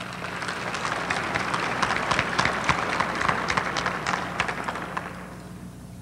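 Audience applauding: the clapping swells to a peak and then fades out about five seconds in.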